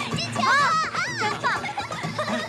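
Children shouting and cheering excitedly at a goal, high voices rising and falling, loudest about half a second in, over steady background music.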